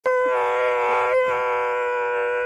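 Siberian husky wedged under a deck, howling one long, steady note.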